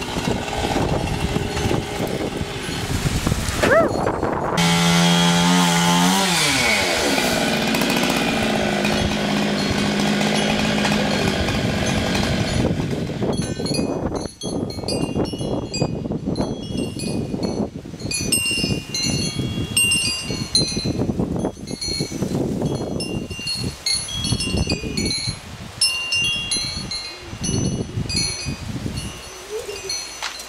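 Chainsaw running, its engine pitch falling about five seconds in. In the second half a wind chime tinkles over the background.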